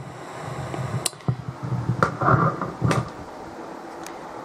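Low hum from a homemade valve amplifier and small speaker, with a few sharp clicks and soft knocks.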